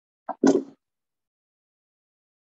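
A short thump-like sound about half a second in, just after a faint click, over otherwise silent audio.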